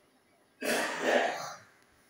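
A man clearing his throat once, a single harsh noisy rasp starting about half a second in and lasting about a second.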